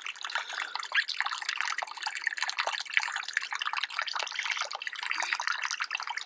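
Small creek running steadily, water trickling and dripping.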